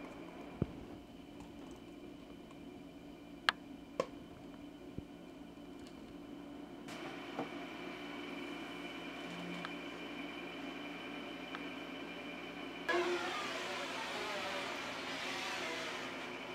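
A steady mechanical hum with a few sharp clicks and knocks in the first few seconds. About thirteen seconds in, a louder steady rushing noise starts abruptly and carries on.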